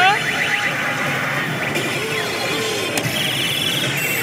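Oshu! Bancho 3 pachislot machine playing its effect sounds and music over the steady din of a pachinko hall, opening with a quick rising sweep.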